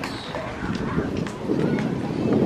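Several voices talking around an athletics track, with a few light scattered taps.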